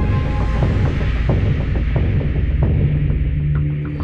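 Dramatic soundtrack sting: a sudden deep boom that settles into a throbbing low bass drone, with a hiss on top that fades away over a few seconds.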